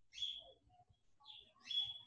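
Faint bird chirping in the background: three short high chirps, one just after the start, one about a second and a half in and one near the end.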